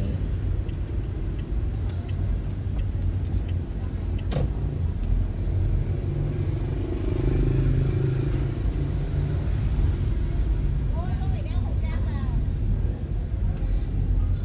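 Steady low rumble of a car's engine and tyres heard from inside the cabin while driving, with a brief sharp click about four seconds in.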